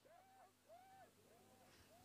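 Near silence, with faint repeated echoes of an amplified man's voice from a PA system, one every half second or so, dying away.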